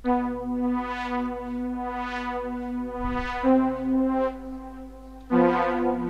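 Sawtooth lead synth (a single-oscillator patch on FL Studio's Sytrus) playing three long held notes of a slow melody. Its filter cutoff is modulated up and down, so the tone brightens and darkens about once a second.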